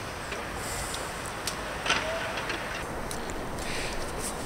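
Steady outdoor city background noise with a few faint clicks and a brief faint chirp about halfway through.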